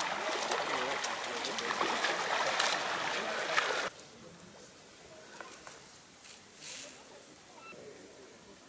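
Many bare feet splashing and sloshing through shallow water over sand, a dense run of small splashes with voices chattering under it. About four seconds in it cuts off abruptly to a much quieter open-air background with a few faint short sounds.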